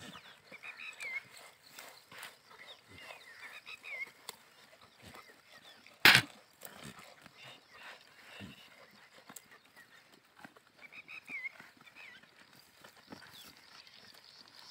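Goats grazing close by, tearing and chewing grass in a run of small irregular crunches and rustles. One short, loud thump-like noise about six seconds in stands out above the rest.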